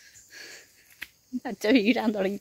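A woman's voice: a faint breath early on, then she speaks loudly from about a second and a half in.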